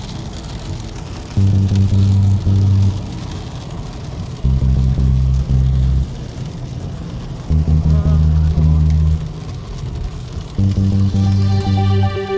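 Ambient house electronic music: a deep synth bass chord sounding in blocks of about a second and a half, roughly every three seconds, over a steady hiss.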